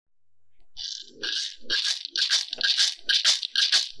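A hand rattle (maracá) shaken in a steady beat, about two to three strokes a second, starting about a second in.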